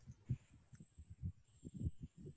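Quiet over a video-call line: a few faint low bumps and a thin, steady high-pitched tone.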